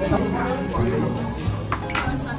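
Background music with voices talking, and light clinks of cutlery against dishes at a dining table, a couple of them late on.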